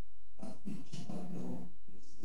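A man's voice choked with crying, a short strained, sobbing utterance as he speaks through tears.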